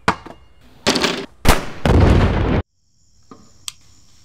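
Several loud explosions over about two and a half seconds, the last one running on for most of a second before cutting off suddenly. After that, a faint steady high-pitched whine with a single click.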